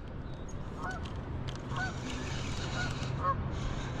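Spinning reel being cranked to bring up a hooked crappie, a faint whir over a steady low hum and wind and water noise. Three short honks from distant birds sound over it.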